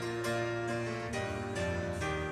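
Instrumental keyboard prelude music, piano playing a slow melody over held bass notes.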